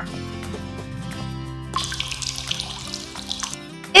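Soft background music with steady held notes, and a trickle of milk poured into a small plastic measuring cup for about a second and a half, starting about two seconds in.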